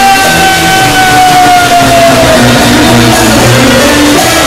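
Live Turkish band music with plucked string instruments, carried by one long held note that falls slowly in pitch over the first two seconds or so before the accompaniment takes over.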